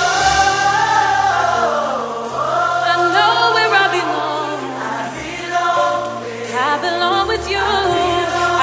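Gospel song: a choir singing held, gliding vocal lines over steady bass notes that change every second or two.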